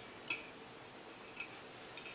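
Two faint, short clicks about a second apart as fingers work an o-ring out of the groove of a plastic filter housing, over quiet room tone.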